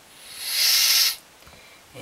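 A brief burst of natural gas hissing out of the new gas terminal's outlet fitting as it is pressed open, lasting about a second and stopping suddenly. It shows that gas is reaching the terminal.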